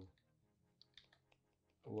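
Several faint, scattered clicks of a computer mouse, with a voice starting again near the end.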